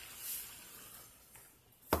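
Salt pouring from a canister into a pot of boiling water: a soft hiss that fades away over the first second. A single sharp knock just before the end.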